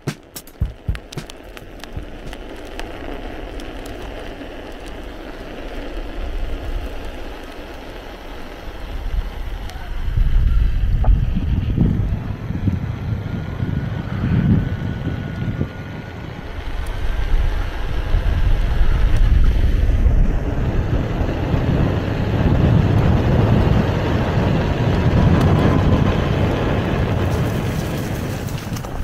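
KingSong S22 electric unicycle being ridden, with wind rushing over the microphone and the rumble of its rolling tyre. The low, gusty rumble grows much louder about ten seconds in and stays loud, rising and falling in swells.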